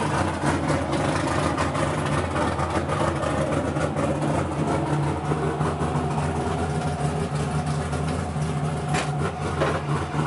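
A drift car's engine idling steadily at an even, unchanging note.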